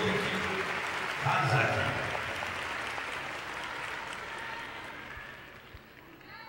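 Audience applauding, the clapping dying away gradually over several seconds. A voice speaks briefly near the start.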